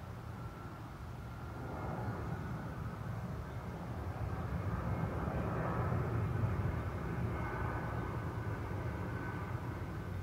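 Low rumble of a distant engine, swelling slowly to its loudest about six seconds in and then easing off.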